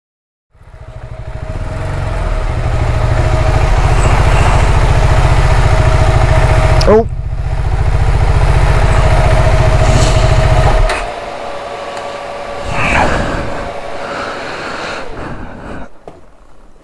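KTM 390 Adventure's single-cylinder engine running in a small garage, a loud pulsing low rumble that fades in over the first few seconds. It stops abruptly about eleven seconds in, leaving quieter clatter.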